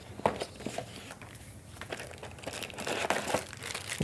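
Plastic bag wrapped around a handheld radio crinkling as the radio is lifted out of its cardboard box, with small taps and scrapes of the packaging; the crinkling gets busier toward the end.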